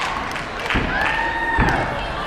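A gymnast's feet thudding on a sprung floor-exercise mat during a tumbling run, two heavy thumps about a second apart, with a spectator's long drawn-out cheering call held over them.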